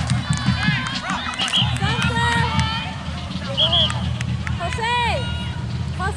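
Several voices shouting and calling out across an outdoor soccer field, overlapping in short bursts, with a steady low rumble underneath.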